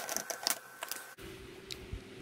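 Resin diamond-painting drills clicking and pattering as they are poured from a plastic sorting tray into a plastic storage container: many small rapid clicks. They stop abruptly about a second in, leaving a faint steady hum.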